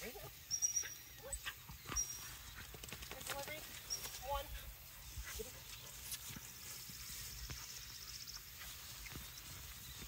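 Footsteps swishing through tall grass, with several short soft vocal calls in the first half. A few brief high bird chirps, and a thin high trill a little past the middle.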